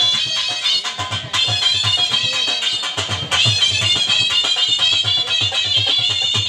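A shehnai plays a high, wavering, ornamented melody over a steady dhol rhythm in a live folk performance. The shehnai breaks off briefly about a second in and again about three seconds in, while the drum keeps its beat.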